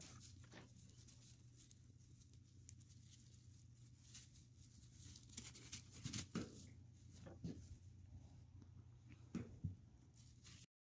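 Faint, scattered knocks and rustles from two young goats butting heads and scuffling on dry leaves, over a low steady hum. The sounds come in clusters, busiest about halfway through and again near the end.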